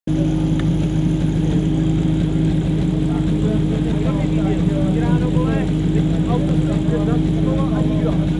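A steady engine drone, holding one pitch throughout, with voices talking over it from about three seconds in.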